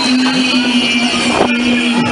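Future Dance fairground ride in motion, heard on board: one steady low tone is held for about two and a half seconds over the rushing noise of the ride.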